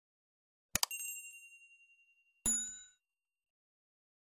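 Animated subscribe-button sound effects: a quick double click followed by a high ringing chime that fades away over about a second and a half, then a short bell-like ding about two and a half seconds in.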